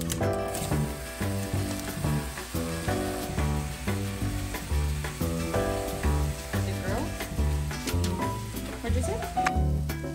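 Ground turkey sizzling as it fries in a nonstick pan, under background music with a steady beat.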